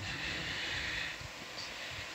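Steady background hiss with no speech, a little brighter and higher during the first second.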